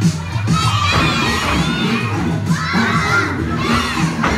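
A group of young children shouting and cheering together, many high voices overlapping and rising and falling, with music underneath.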